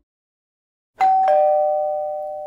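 Two-tone ding-dong doorbell chime, a higher note about a second in, then a lower one, both ringing on and slowly fading.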